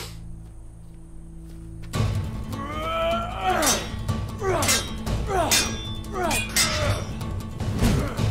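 Dramatic film score: a quiet low drone, then from about two seconds in loud action music with sword-fight sound effects. Sharp metallic clashes and hits come about once a second, each trailed by a falling pitched sweep.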